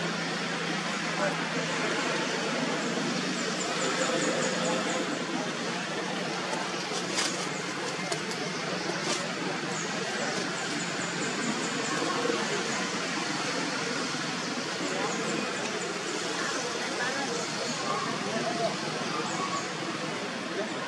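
Outdoor ambience: a steady hiss with indistinct voices, and short runs of high, rapid chirps or ticks every few seconds.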